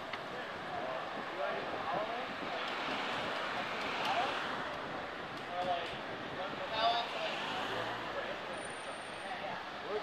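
Steady city street and traffic noise heard while riding a bicycle, with faint, indistinct chatter from other riders now and then.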